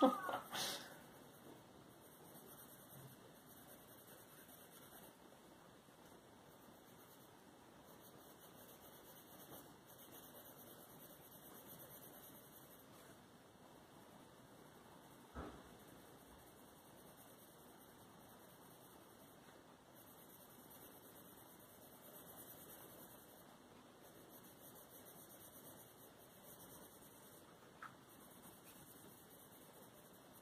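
Faint scratching of a Prismacolor Premier coloured pencil shading on paper, under low room hiss. A brief high-pitched cry comes at the very start, and a soft knock about halfway through.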